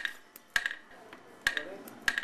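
Hollow bamboo poles knocking against each other or the stone floor: three sharp, irregular knocks, each with a brief ringing tone.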